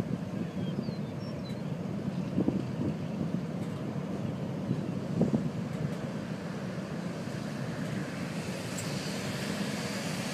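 Steady wind noise on the microphone mixed with the noise of a moving vehicle, with a few brief knocks.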